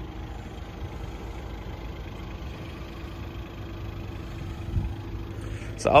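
Steady low rumble of outdoor background noise with a faint constant hum, and a brief low thump a little before the end.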